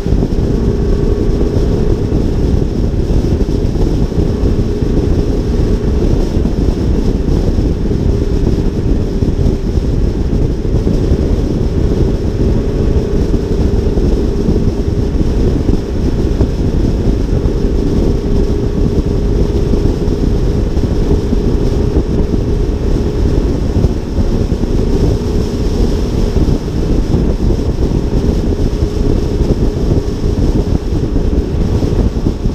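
Wind buffeting the microphone of a hood-mounted action camera on an Audi R8 at freeway speed, a steady rushing noise over the car's road and engine drone.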